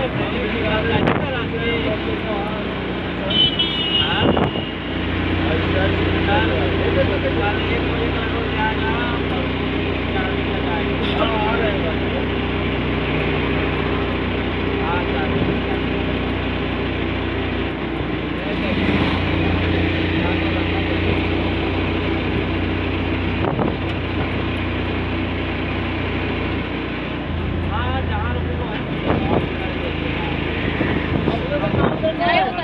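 Steady hum of a moving road vehicle with passing traffic, heard from inside an open-sided vehicle, with indistinct voices now and then.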